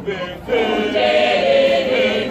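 Church choir of women's and men's voices singing together in harmony; after a short dip, a new sustained phrase comes in about half a second in.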